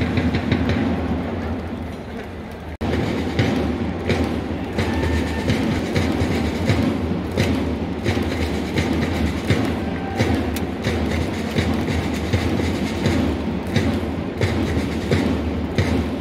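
A baseball cheering section's taiko drums and snare drum beating a fast, steady rhythm, with a large crowd of fans around them in the dome. The sound cuts out for an instant about three seconds in.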